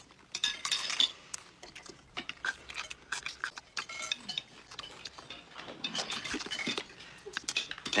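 Knives and forks clinking and scraping on china dinner plates, a scatter of short, sharp clicks with a few brief ringing clinks.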